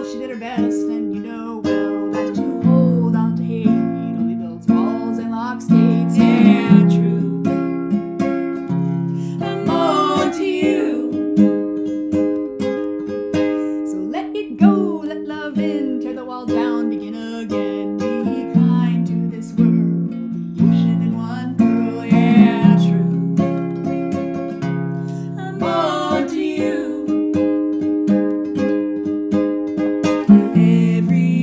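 An acoustic song: a nylon-string classical guitar played throughout, with women's voices singing over it in phrases that come and go.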